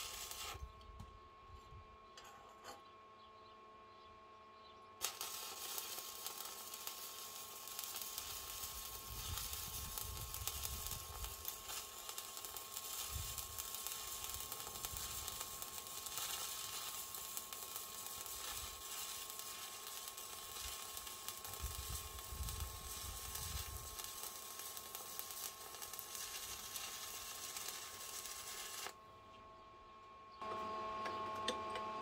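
Stick (MMA) welding arc from a 2.5 mm Chem-Weld 8200 rutile-basic electrode. A brief arc right at the start, then about five seconds in the arc is struck again and burns with a steady crackling hiss for over twenty seconds, cutting off suddenly near the end.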